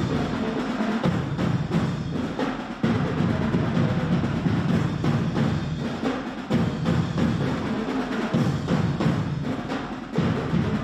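High school marching drum line playing a cadence: fast, dense drum strokes, with the low bass-drum part shifting every couple of seconds.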